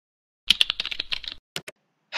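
Fast typing on a computer keyboard: a quick run of key clicks lasting about a second, then two single clicks.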